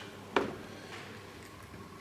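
A single sharp click about half a second in, over a faint steady low hum of room background.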